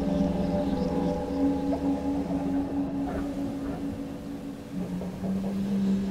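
Experimental improvised drone music: layered low tones held steady, with faint scattered higher sounds above them. About five seconds in, the main low tone gives way to a lower note.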